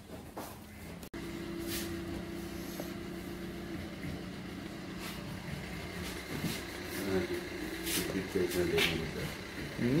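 A steady low mechanical hum that fades out a few seconds in, followed by faint voices of people talking in the background.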